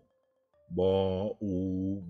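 Speech only: a teacher's voice slowly sounding out Thai syllables ("bu", "buu") in a drawn-out, chant-like way. A short silence, then two long syllables one after the other.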